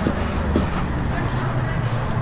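A steady low rumble with faint voices over it, and two light clicks in the first second as the entrance door and cart are handled.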